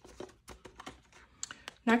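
Light, irregular clicks and taps from handling a cash-envelope binder: a clear plastic pocket and paper envelopes being moved over its metal rings. The word "Next" is spoken just before the end.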